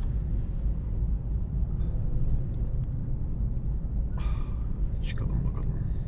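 Low steady rumble inside an Opel Astra's cabin as the car sits in slow traffic, with faint voices about four and five seconds in.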